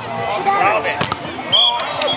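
Several players calling and shouting over one another during a volleyball game, with sharp smacks of the ball being hit: one near the start and a quick double one about halfway.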